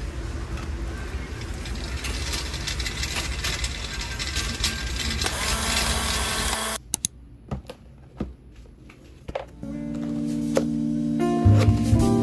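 Busy supermarket ambience with scattered clatter from cans and a plastic shopping basket. About seven seconds in it drops to a quiet room with a few sharp taps, and background music with held notes begins about ten seconds in.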